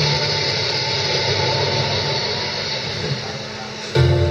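Audience applause and crowd noise, fading gradually, over a low steady tone.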